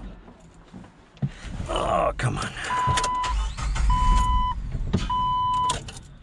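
Three identical electronic warning chimes from the Jeep Wrangler's dashboard, each about half a second long and a little over a second apart. Under them are low thumps and rustling as someone climbs into the driver's seat.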